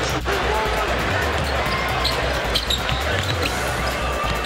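Basketball game sound: a ball bouncing on the hardwood court over arena noise, with music carrying a steady low bass and a few sharp knocks about two and a half seconds in.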